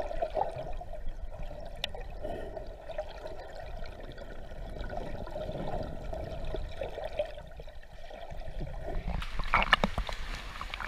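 Sea water heard from under the surface, a muffled wash with bubbles as a swimmer fins through a shallow rocky cave passage. About nine seconds in it opens into clearer, sharper splashing as the surface is broken.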